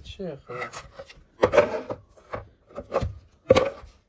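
Flat-pack desk panels of white laminated particleboard being handled and moved on a carpeted floor: a few short scraping knocks of board on board.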